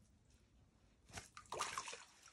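Faint splashing of water in an ice-fishing hole as a trout is let go into it by hand: one small splash about a second in, then a short run of splashes near the end.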